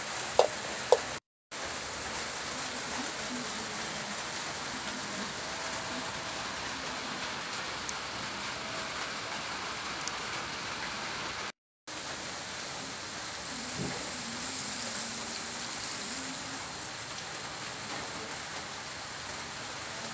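A metal ladle clinks twice against the cooking pot in the first second, then a steady even hiss carries on, cutting out briefly twice.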